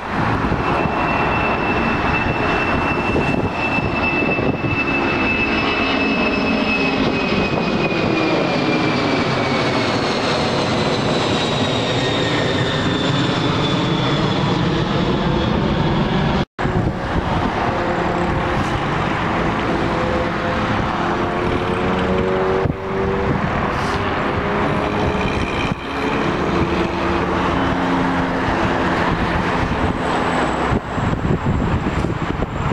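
Boeing 747 freighter climbing out overhead after takeoff: a loud, steady rush of four jet engines with a high whine, and the whine and the lower tones slowly fall in pitch as the jet passes over. About halfway through the sound cuts abruptly to another climbing airliner's engine noise, with steadier low tones.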